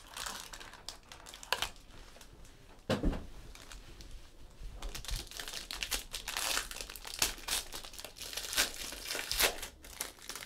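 Silver foil wrapper of a 2015-16 Upper Deck Black Diamond hockey card pack being torn open and crinkled by hand, a dense run of crackles through the second half.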